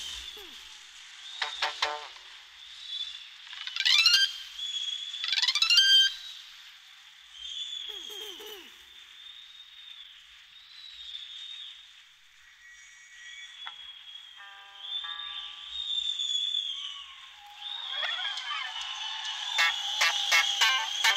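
Instrumental close of a live rock song, thin and high-pitched with no bass or drums: a held electronic tone with rising swoops and short quick runs of notes, growing denser and louder near the end.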